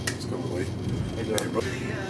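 Faint, indistinct voices over a steady low room hum, with two sharp clicks: one at the start and one about a second and a half in.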